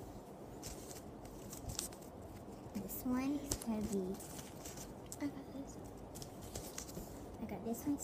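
Soft, indistinct voices with light, scattered rustling and crinkling of wrapping paper as small paper-wrapped packages are handled.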